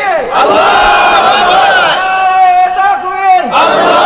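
A preacher's amplified voice holding one long, high chanted note in the melodic style of a Bengali waz sermon, with a sharp fall in pitch near the end.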